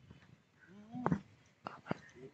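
A faint voice calls out briefly about a second in over quiet open-air ground ambience, followed by a couple of sharp clicks.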